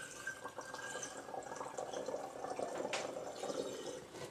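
Dilute sulfuric acid poured from a plastic jug through a plastic funnel into a glass jar, a steady trickle of liquid filling the jar, with one sharp click about three seconds in.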